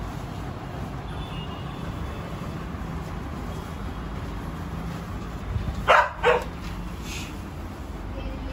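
A dog barks twice in quick succession, two short loud barks over a steady low background rumble.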